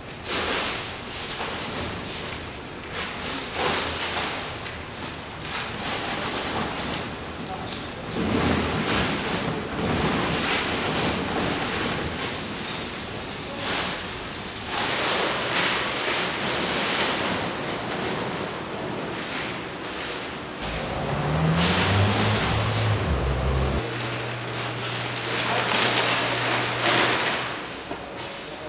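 Large plastic bags rustling and crinkling as they are handled and emptied, with a continual crackle of plastic.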